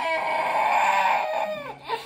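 A toddler crying: one long, high wail held for about a second and a half, dropping in pitch as it ends.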